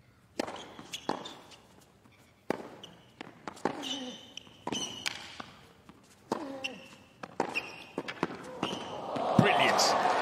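A tennis rally on a hard court: sharp racket strikes and ball bounces about once a second, most of them followed by a player's short grunt. Crowd cheering and applause swell up near the end as the point is won.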